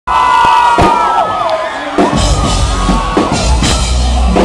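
A crowd of fans screaming and cheering with long, high cries. About two seconds in, the live band's bass and drums come in under the screams as the song starts.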